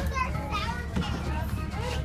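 A group of children chattering and calling out over one another, with a steady low hum underneath.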